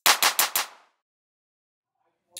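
Logo intro sound effect ending: a rapid run of sharp percussive hits, about ten a second, that fades out within the first second, followed by silence.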